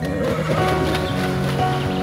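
Background music with held, sustained notes, with the sound of a horse mixed in beneath it.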